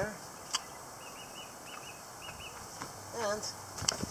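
A small bird chirping: a quick run of short, high chirps, mostly in pairs, lasting about a second and a half, over faint outdoor hiss. A single sharp click comes about half a second in.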